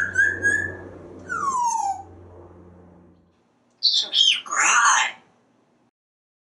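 African grey parrot whistling: a rising note held briefly, then a falling note about a second later. After a short silence comes a brief, rough, voice-like burst near the end.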